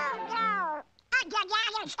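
Quacky cartoon duck voices: an excited cry that falls in pitch, then, after a short break, a quick run of garbled, sing-song duck-voice syllables.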